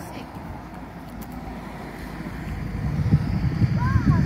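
Wind buffeting the phone's microphone outdoors: an uneven low rumble that swells in the last second or so, with faint voices in the background.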